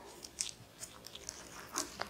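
Faint handling noise as a cloth measuring tape is laid along a knitted wool piece: a few light clicks and soft rustles, the clearest about half a second in and again near the end.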